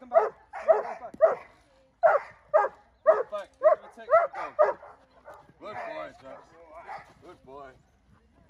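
Dobermann barking repeatedly at a protection-training decoy: a quick run of sharp barks for about five seconds, then quieter barks near the end.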